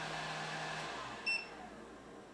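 Steady fan-like running noise from the EcoFlow R600 Max power station and its 1000-watt load cuts out about a second in, followed by a short high beep from the unit: the chained inverters shutting down and signalling a fault under load.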